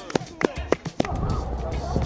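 Background music, with a few sharp knocks about a third of a second apart in the first second.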